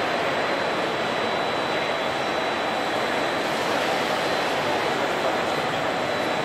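Steady din of machinery and ventilation in a machine-tool exhibition hall, with a faint, thin, steady high whine.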